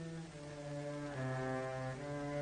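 Film background score: slow, sustained low chords in a brass-like tone, shifting to a new chord about a second in.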